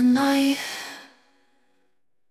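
The closing note of an AI-generated alternative-pop song: a last held vocal tone wavers slightly in pitch, then fades out, and the track ends in silence about a second and a half in.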